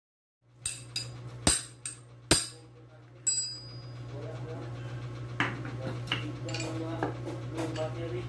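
Metal hand tools and fork parts clinking as a scooter's front shock is taken apart: two sharp clinks about one and a half and two and a half seconds in, with lighter clicks later, over a steady low hum.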